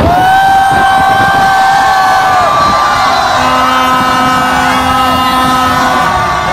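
Long, steady horn blasts over a loud cheering crowd: one held note for about two and a half seconds, then several horns sounding together from about three seconds in.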